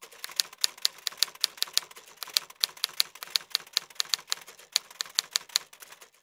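Typewriter key-strike sound effect: a quick, even run of key clicks, about five a second, timed to a title being typed onto the screen. It stops just before the end.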